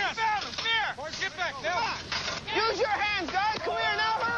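Several people's voices calling out over one another, with pitch rising and falling in quick arcs; no words can be made out.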